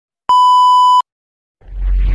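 A steady high test-tone beep, the classic sound that goes with TV colour bars, lasting under a second. About a second and a half in, a noisy whoosh with a deep rumble starts swelling up.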